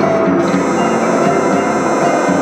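Live folk band music, instrumental, with a long held note coming in about half a second in.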